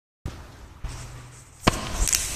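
Opening of a karaoke recording: a faint low hum, a light tap a little under a second in, then a single sharp thump with a short ring about one and a half seconds in.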